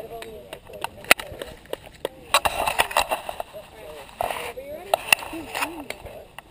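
Several people talking indistinctly in the background, with scattered sharp clicks, the strongest about a second in, and two short bursts of rustling.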